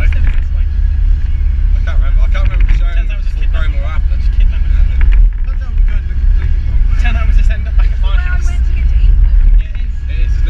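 Steady low rumble of a car's engine and tyres, heard inside the cabin while driving, with voices talking over it.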